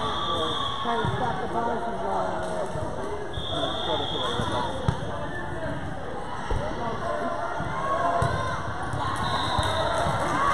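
Many voices chattering and calling in a large gym hall during a youth volleyball match, with a couple of sharp volleyball hits about five and six and a half seconds in.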